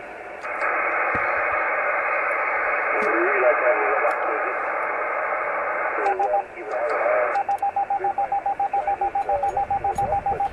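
Amateur radio receiver hiss with a faint, distant voice in the noise. About six seconds in, a single tone near 800 Hz starts and then becomes an even, rapid string of Morse beeps, about six or seven a second, from a CW keyer sending a steady signal.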